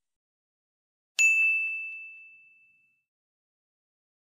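A single bright ding sound effect about a second in: one high bell-like tone that rings out and fades over about a second and a half, with silence around it. It cues the pause for the learner to repeat the phrase aloud.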